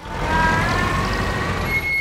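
Cartoon car sound effect: a small car's engine running as it drives along. A steady rumble builds over the first half second, with a faint whine that rises slightly.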